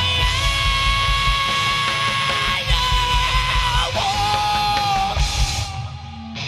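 Hard rock band playing live: a singer belts long held notes over distorted electric guitar, bass guitar and drums. The band drops out briefly near the end.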